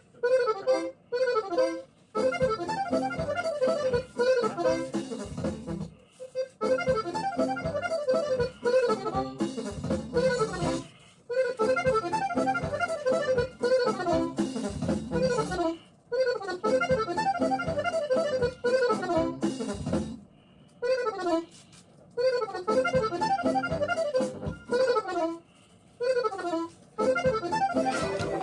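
Accordion playing melodic phrases of a few seconds each, with falling runs of notes. It breaks off briefly between phrases and starts again, as when a part is being played through in short takes.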